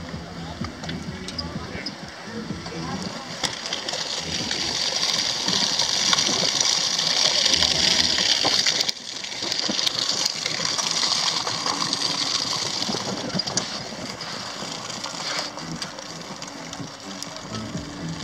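A steady rushing hiss of wind and movement noise on the microphone of a phone carried on a moving bicycle. It swells about four seconds in and cuts out for a moment about nine seconds in.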